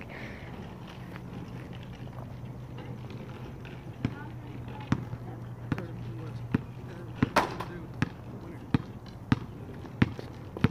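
A basketball being dribbled on an asphalt driveway: sharp bounces at a steady pace of a little more than one a second, starting about four seconds in.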